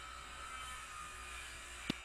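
Faint background noise through a video call's open microphone: a steady low hum under an even hiss, with a single sharp click near the end.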